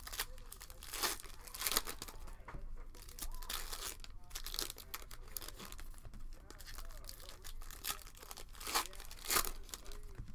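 Foil wrappers of Panini Prizm retail basketball card packs being torn open and crinkled by hand, in irregular bursts. The loudest bursts come about a second in, near two seconds, and near the end.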